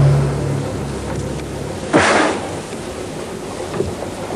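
Two sudden loud rushing noises about two seconds apart, each fading off, the first over a low steady hum.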